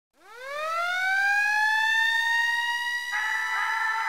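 A synthesizer tone swelling up from silence and gliding upward in pitch like a siren, then holding steady, with more notes joining in a chord about three seconds in. This is the opening of an electronic dance-music track.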